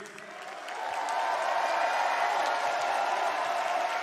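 Arena crowd cheering and applauding, swelling up over the first second and then holding steady.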